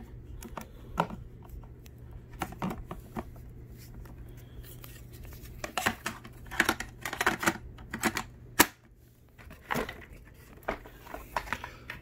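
Hard plastic parts of a Bissell CleanView upright vacuum being handled, with scattered clicks, rattles and knocks from its housing, filter covers and dust cup. The loudest is one sharp knock about eight and a half seconds in.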